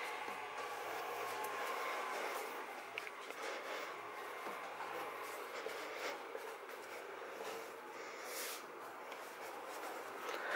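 Hands kneading dough on a floured work surface: faint, steady rubbing and pressing.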